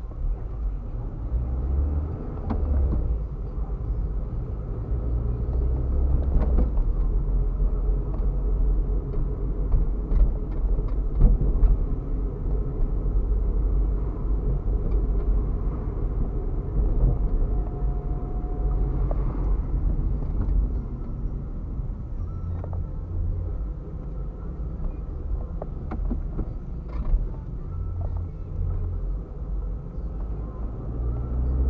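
Road and engine rumble heard from inside a car driving slowly on a city street, a steady low drone with occasional faint clicks and knocks.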